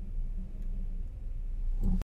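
Steady low rumble of background noise, with a brief knock just before the sound cuts off.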